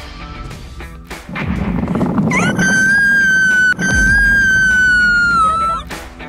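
A long high-pitched squeal, swooping up at the start, held for about three seconds with a brief break in the middle, then dropping away, over a low rumble and background music.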